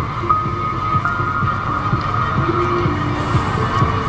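Dark Halloween-style background music: held notes that step in pitch over a low, throbbing, heartbeat-like pulse.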